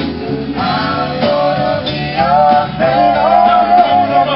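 Live band music with sung vocals: a melodic lead voice over guitar and bass accompaniment, loud and continuous.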